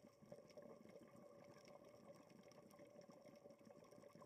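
Faint, muffled underwater sound heard through a sealed camera housing: a steady hum with a dense crackle of small clicks.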